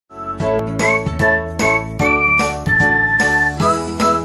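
Upbeat intro music: a bright, pitched melody of struck notes over a steady bass, starting at once and going on in an even rhythm.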